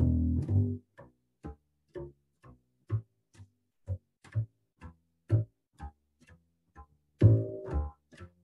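Double bass played pizzicato, walking a line in steady quarter notes about two a second over a ii–V–I in D major, starting from the root of the E minor seventh chord and arpeggiating up. The first note is loud and ringing, the following notes are short and fainter, and louder ringing notes return near the end.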